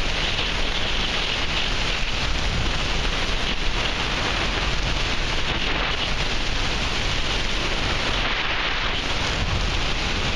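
Steady rush of airflow on the microphone of a camera fixed to a hang glider in flight.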